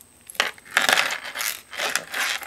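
Metal keychain hardware clinking and jingling as it is handled: the chain, ring and clip of a pom-pom keychain with a rhinestone teddy-bear charm. There is a sharp click about half a second in, then a dense jingle through the middle and another near the end.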